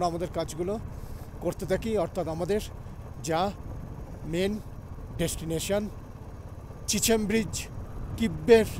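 Motorcycle engine running steadily, a continuous low rumble under a man's voice.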